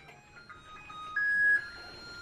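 Microwave oven playing its end-of-cooking melody: a short tune of electronic beep notes stepping between pitches. The loudest is a higher note about a second in, and the tune ends on a longer held note.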